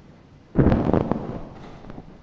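A sudden burst of crackling noise about half a second in, several sharp crackles close together, fading out over about a second.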